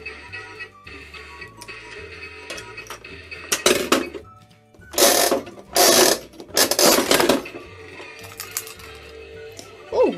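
Plastic toy capsule-vending machine's knob being turned, its gears ratcheting in several loud bursts between about four and seven and a half seconds in, dispensing a capsule. Background music plays throughout.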